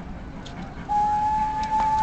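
A steam locomotive's whistle starts about a second in and holds one steady note.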